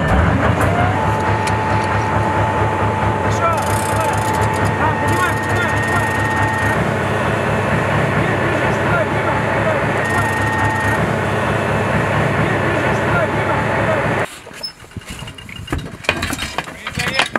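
Diesel engine of a 2S4 Tyulpan tracked self-propelled mortar running steadily, with a low pulsing rumble and a steady whine over it. The sound cuts off suddenly about two seconds before the end, leaving something much quieter.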